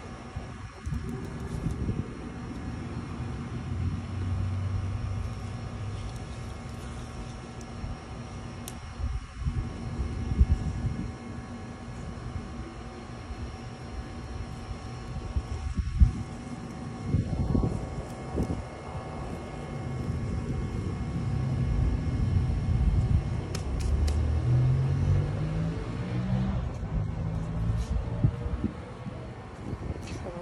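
Steady low rumble of vehicle traffic, with an engine rising in pitch about 24 seconds in.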